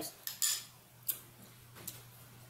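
A metal spoon clinking and scraping against a small plate a few times, in short separate clicks.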